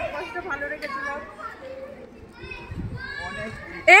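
Several people's voices talking and calling out to one another, ending with a sudden loud shout of "Hey".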